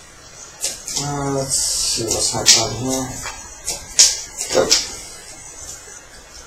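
Magic: The Gathering cards being handled on the table: several sharp card snaps and a short sliding rustle, with a person's voice mumbling briefly from about a second in.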